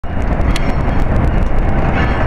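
NJ Transit PL42AC diesel-electric locomotive 4005 running past with its passenger train: a loud, steady rumble with scattered clicks, mixed with wind on the microphone.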